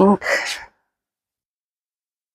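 Speech: a voice finishing a word, then dead silence for over a second.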